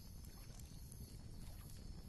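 Faint, steady background noise with no distinct event: close to silence.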